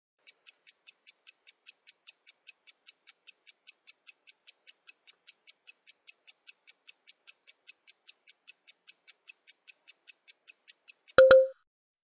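Clock-ticking sound effect of a countdown timer, about four even ticks a second, ending just before the end with a click and a short beep.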